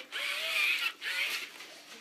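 Robosapien V2 toy robot's gear motors whirring in two bursts, a long one and then a short one about a second in, as it moves its arms and body during its start-up routine.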